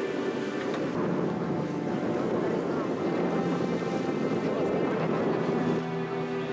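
Steady wind noise on the microphone mixed with the running noise of a moving boat on the water, with a few held low tones underneath.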